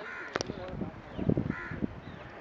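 A crow cawing twice, once at the start and again about one and a half seconds in. Between the caws there is a sharp knock shortly after the start and a run of low thuds from the polo ponies' hooves on the turf.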